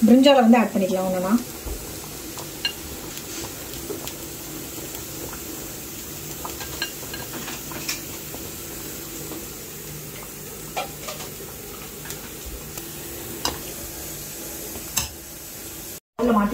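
A metal spoon stirring curry in a stainless steel pan, with scattered sharp clinks of utensil on pan every second or two over a steady low hiss of cooking.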